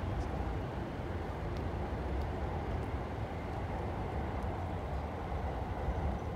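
Steady low rumble of outdoor town ambience with no single event standing out, and a few faint ticks.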